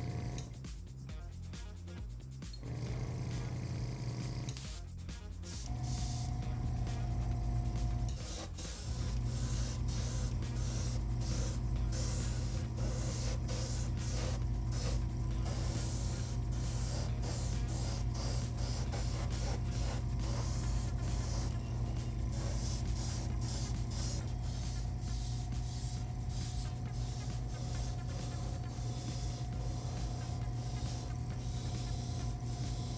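Small airbrush compressor running with a steady low hum, while a gravity-feed airbrush sprays ceramic coating with a hiss that comes and goes rapidly as the trigger is worked, steady from about eight seconds in.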